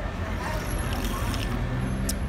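Busy street traffic with a bus engine running close by: a steady low rumble.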